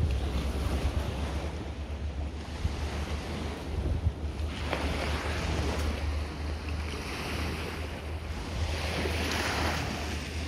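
Wind blowing on the microphone with a steady low rumble, over the wash of small waves breaking on a sandy beach.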